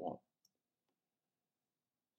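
Near silence after a spoken word, broken by a faint single click about half a second in.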